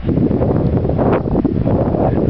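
Strong wind buffeting the camera microphone: a loud, continuous, rough low rumble.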